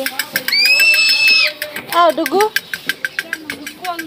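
A shrill, steady whistle tone held for about a second, over a fast, even clicking of about six or seven clicks a second.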